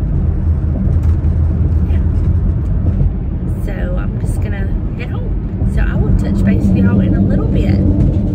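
Steady low rumble of road and engine noise inside a moving car's cabin, with a few brief snatches of a woman's voice in the second half.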